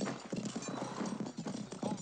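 Hooves of several horses walking on a dirt track, an irregular clip-clop of overlapping steps.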